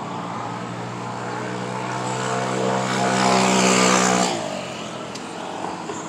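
A motor vehicle passing close by on the street, its steady engine hum growing louder over the first four seconds and then dropping away abruptly, leaving quieter traffic noise.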